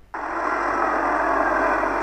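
Steady running noise of an HO-scale model diesel locomotive on the move, cutting in suddenly just after the start and holding level.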